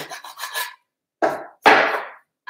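A round file rasping inside a bamboo tube in three back-and-forth strokes, gently opening out the bore where it is too tight for the seat sleeve.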